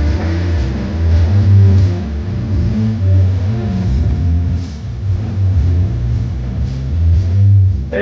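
Dance music played loud over a large PA sound system, with a heavy, pulsing bass.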